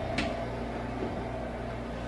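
Steady low hum of indoor room tone, like a ventilation or air-conditioning fan, running evenly.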